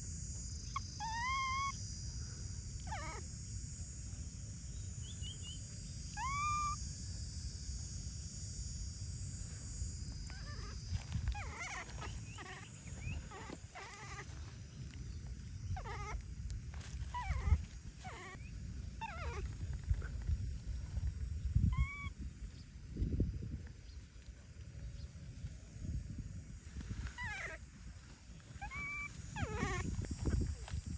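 Baby macaque calling: short rising coos spaced several seconds apart, with a run of quicker falling squeaks in the middle, over rustling foliage and a few low thumps.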